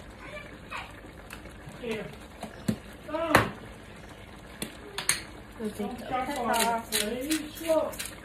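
Kitchen handling beside a wok: a few sharp clicks and knocks of utensils or containers, the loudest about three and a half seconds in. Voices talk over the second half.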